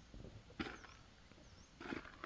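Two short, soft scuffs in loose tilled soil, about a second and a quarter apart, from rubber boots stepping and hands working the earth while planting.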